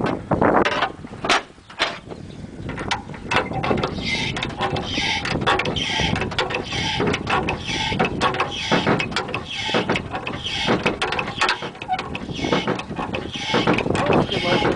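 KAMAZ truck's diesel engine running, heard close up at the engine, with many irregular knocks and clicks over a steady noise. It is loud.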